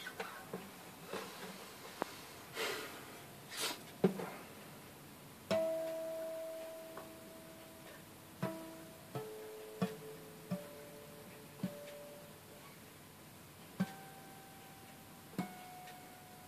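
Acoustic guitar picked slowly. After a few seconds of soft rustling, single notes and two-note chords are plucked one at a time, about every one to two seconds, each left to ring and die away.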